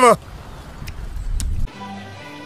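A man's short, loud cry, rising then falling in pitch, right at the start. It is followed by a low rumble with two faint clicks, which cuts off abruptly near the end.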